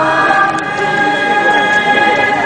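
A choir singing a hymn in long held notes, moving from one chord to the next near the start.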